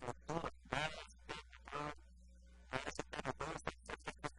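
Speech: a man talking in Spanish, with a short pause about halfway through, over a steady low hum.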